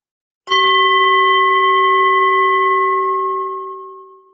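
A bell struck once, about half a second in, ringing with a clear low tone and several higher overtones that slowly fade away near the end.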